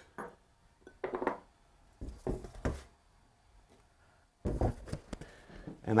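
Quiet kitchen handling sounds: a metal baking pan with halved butternut squash being moved about, giving a few light knocks, then a short clatter about four and a half seconds in.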